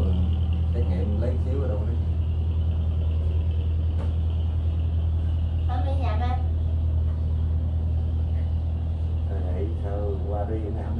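A steady low hum runs throughout. Brief murmured voices come in about a second in, again around six seconds, and near the end.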